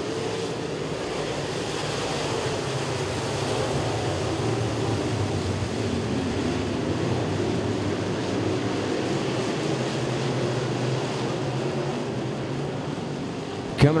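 A pack of open-wheel dirt-track modified race cars under green flag, their engines blending into one steady drone that swells a little, then eases.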